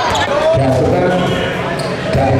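Basketball bouncing on a hardwood court during a game, with the voices of players and spectators.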